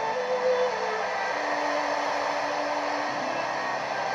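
Retekess TR618 portable radio's speaker playing a weak shortwave broadcast on 15770 kHz, mostly steady static hiss with a few faint held tones from the programme underneath.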